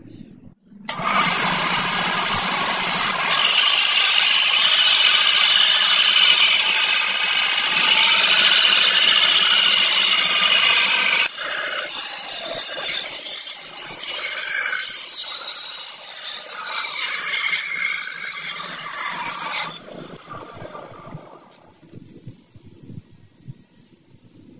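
Belt grinder grinding rust off a steel sword blade: a loud abrasive hiss with a high ringing whine from the steel on the belt. About eleven seconds in it drops to a quieter, uneven grinding, which fades out near the end.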